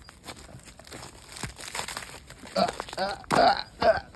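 Footsteps crunching faintly on snow-covered ground, then about two and a half seconds in a person's voice making loud wordless vocal sounds.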